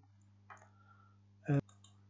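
A low, steady hum, with a brief voiced sound and a sharp click about one and a half seconds in.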